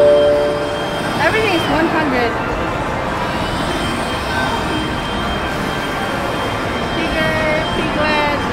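Amusement-arcade ambience among crane-game prize machines: electronic music and tones from the machines over a steady din, with a brief voice about a second and a half in.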